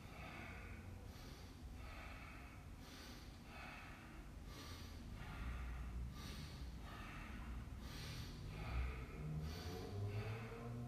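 A man breathing deeply in and out through his nose, a steady rhythm of hissing inhales and exhales: slow cool-down breathing after a workout.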